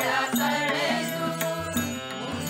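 A mixed group of men and women singing a Kannada devotional song (a Haridasa devaranama) together. They are accompanied by a harmonium's held notes and a tabla.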